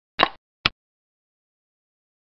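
Game-replay sound effect for a xiangqi piece being moved on a digital board: two short clicks about half a second apart, the first a little longer and louder.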